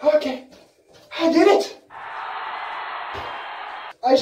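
A man's wordless moaning, two short cries in the first two seconds, followed by about two seconds of steady hiss that cuts off abruptly just before the end.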